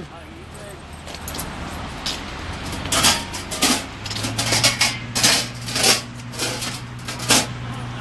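Light clicks and rattles, many in quick succession through the middle seconds, over a low steady hum that comes in about four seconds in.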